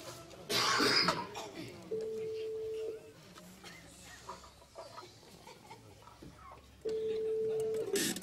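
Telephone ringback tone: two steady, single-pitch beeps about a second long, some five seconds apart, heard while a caller waits for the other end to answer. A loud cough comes about half a second in.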